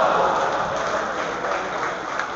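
Audience clapping as a rally ends, loudest at the start and slowly dying away.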